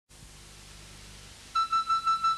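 Faint hiss and hum, then about one and a half seconds in a single high electronic synthesizer tone starts suddenly and pulses about six times a second: the opening note of a TV news intro theme.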